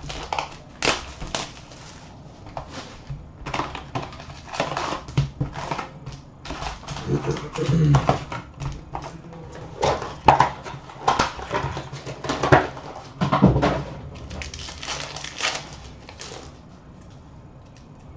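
Upper Deck hockey card box and its foil-wrapped packs being torn open and handled by hand: irregular crinkling, rustling and sharp tearing clicks.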